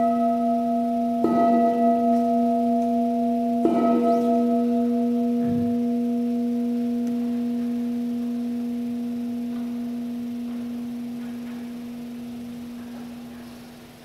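Altar bell rung at the elevation of the consecrated host, marking the consecration. It gives a low, long, steady ring, is struck again about a second in and about four seconds in, and slowly fades away near the end.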